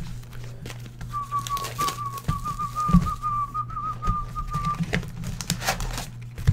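A person whistling a thin, slightly wavering tune around one pitch for about four seconds, over knocks, clicks and scraping of cardboard card boxes being handled and pulled from a case.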